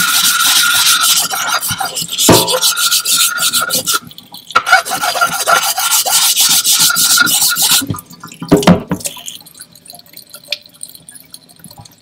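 Edge of a wet Nakayama kiita natural whetstone ground against a coarse abrasive to chamfer it: a loud, gritty back-and-forth scraping with a thin steady whine under it. It comes in two long bouts with a short break about four seconds in, then a knock and quieter handling for the last few seconds.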